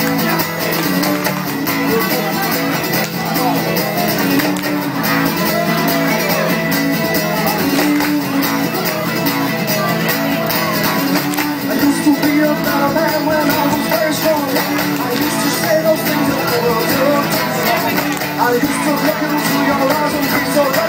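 A band playing a song live, with strummed guitar and singing.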